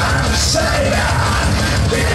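Live punk rock band playing loud, with electric guitar and bass, and a vocalist yelling the lyrics into a microphone.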